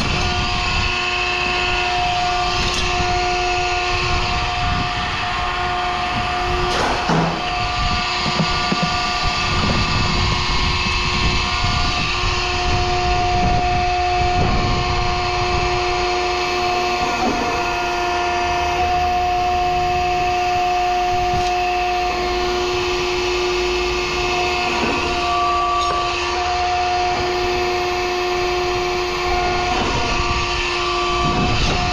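Electric motor-driven shop machine running with a steady hum, with a few clanks and scrapes of metal against metal.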